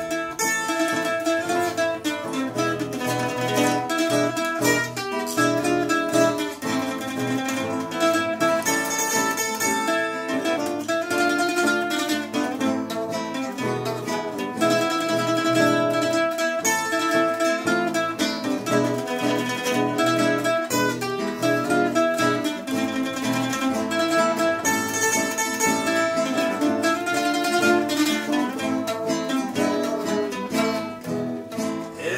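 Nylon-string classical guitar and a higher-pitched, mandolin-like plucked string instrument playing an instrumental passage together, with rapid plucked notes over a steady accompaniment.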